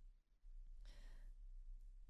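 Near silence with a single faint breath, about a second in, taken by a woman pausing between words at a close microphone.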